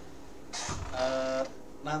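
A man's voice in a brief pause of a talk: a breath, then one short drawn-out vocal sound, with a faint low thump near the start of it.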